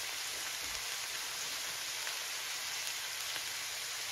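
Onions, mushrooms and other vegetables sizzling steadily in a skillet as they sauté.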